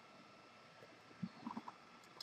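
Near silence: room tone, with a few faint, brief low sounds about a second and a half in.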